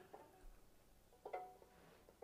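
Banjo strings plucked softly while a D chord is fretted: one faint note or chord a little past halfway that rings briefly and fades, with a fainter touch of the strings near the start; otherwise near silence.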